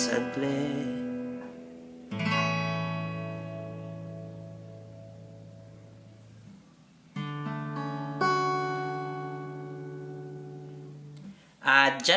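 Acoustic guitar playing the final chords of a song and letting them ring out: a sung note fades at the start, a chord struck about two seconds in rings and slowly dies away, then two more chords struck around seven and eight seconds in ring and fade.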